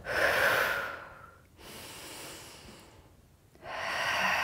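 A woman breathing audibly through the mouth while exercising: a strong exhale, a softer inhale, then another exhale starting near the end, in time with the Pilates arm movements.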